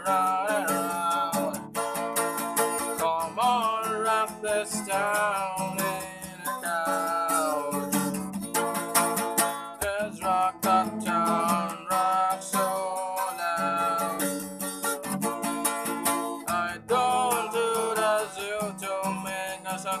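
Acoustic guitar with a capo, strummed steadily, under a person singing.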